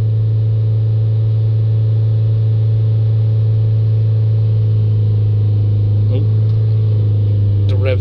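Ford Transit four-cylinder diesel engine held steady at about 3000 rpm, a constant even drone, while it burns off DPF cleaning fluid to bring a blocked diesel particulate filter's pressure down.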